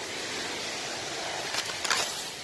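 Steady rushing of a waterfall cascading down over rocks, with a couple of brief clicks near the end.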